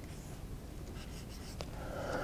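Felt-tip marker writing on a whiteboard: a few short scratchy strokes in two brief runs, the second about a second in.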